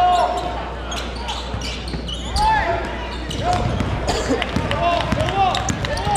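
Live basketball game sound: sneakers squeaking in short repeated chirps on the hardwood court as players cut and stop, with the ball bouncing and voices in the gym.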